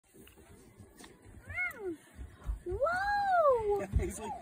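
A small girl's two high-pitched whining squeals: a short falling one, then a longer one that rises and falls, while she strains against a bass on her fishing rod.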